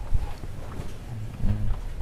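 A low rumble with a short, low murmur of a man's voice about one and a half seconds in.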